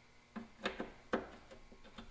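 A few light metallic clicks as a wrench is fitted onto a rusted truck-bed mounting bolt: three sharp clicks in the first second or so, then a faint one near the end.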